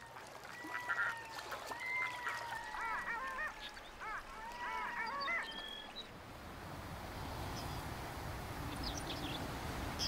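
Red-throated loon calling: a run of drawn-out wailing notes mixed with quick rising-and-falling calls for about the first five seconds. After that only a steady outdoor background hiss remains.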